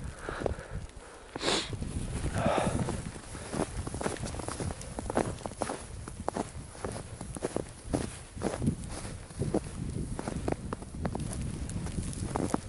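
Footsteps of boots trudging through deep fresh snow, a steady series of soft steps at walking pace.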